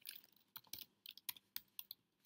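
Computer keyboard typing, faint and unhurried: a string of separate keystroke clicks at irregular spacing as a short word is typed.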